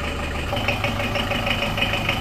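Mercedes-Benz Unimog's diesel engine idling steadily, a low even hum whose pitch shifts slightly about half a second in.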